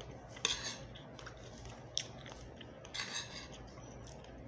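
Metal spoon and fork scraping and clinking against a ceramic plate while scooping up rice: a scrape about half a second in, a sharp clink about two seconds in, and another scrape about three seconds in.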